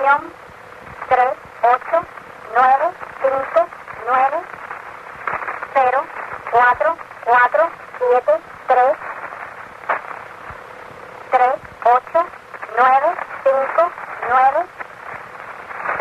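A shortwave radio recording of the Cuban Atención numbers station: a voice reads out digits one syllable at a time, in groups with short pauses between them. The sound is thin and narrow-band over a steady static hiss.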